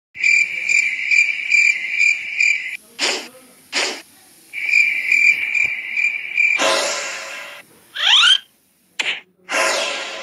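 A high, pulsing chirp repeating about two and a half times a second in two runs, broken by two short hissing bursts; a longer hiss and a quick rising squeal follow near the end.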